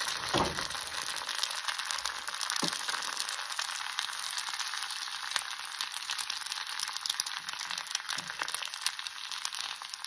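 Egg and shredded honey squash fritter frying in hot oil in a pan: a steady sizzle with fine, constant crackling, and a few faint low thuds.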